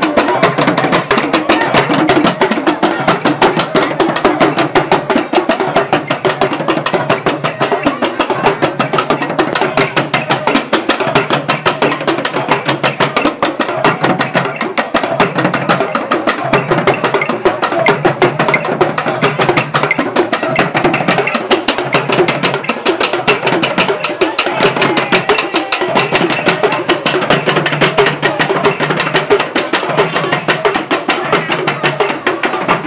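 Traditional percussion ensemble playing a fast, unbroken rhythm: struck calabash gourds, a skin-headed hand drum, clicking sticks and a bundled reed rattle.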